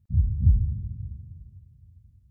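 Heartbeat sound effect: a deep double thump about a tenth of a second and half a second in, fading away over the next second and a half.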